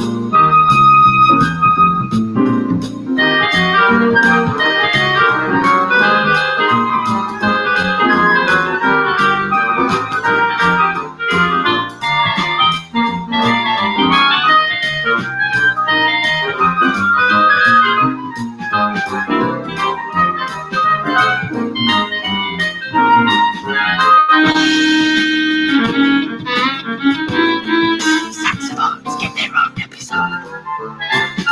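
Woodwind quintet with flute and piccolo on top playing an upbeat jam over a steady drum beat.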